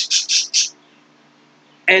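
A small bird chirping rapidly and high-pitched, about six short chirps a second, stopping after under a second. After that there is only a faint steady hum until a man's voice starts near the end.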